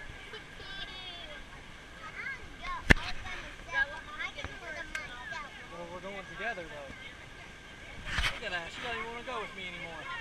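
Background voices chattering, many of them high children's voices, without clear words. A sharp knock stands out about three seconds in, with a softer bump a little after eight seconds.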